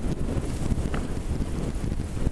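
Wind buffeting the camera's microphone: a steady, rumbling noise.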